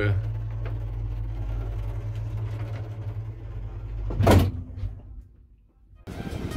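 Old lift with a folding scissor gate running with a steady low hum, then a single loud clunk about four seconds in, after which the hum dies away.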